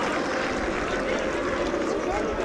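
Steady stadium ambience from a sparse football crowd during live play, an even wash of noise with a few scattered shouts.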